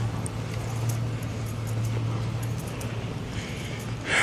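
Steady low hum of a parked fire engine's diesel idling, with outdoor background noise.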